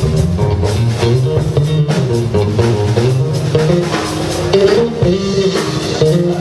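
Jazz trio playing live: electric guitar and bass guitar over a drum kit, with a moving bass line under the plucked guitar notes and steady cymbal strokes.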